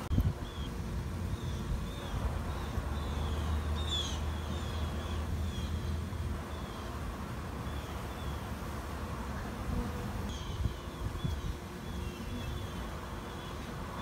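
Honeybees buzzing close by as they crawl out through a wire-mesh trap-out cone over their nest hole, under a low steady hum. Short high chirps of small birds repeat in the background, and a knock sounds right at the start.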